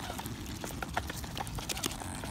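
Mute swan's bill pecking seeds from a hand and off the path: a run of small, irregular clicks and taps.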